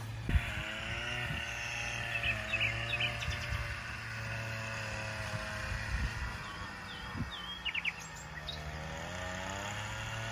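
Small birds chirping in short, scattered calls, a few around two to three seconds in and a quick run near eight seconds, over a steady low drone whose pitch drifts slowly up and down. A brief thump comes just after the start.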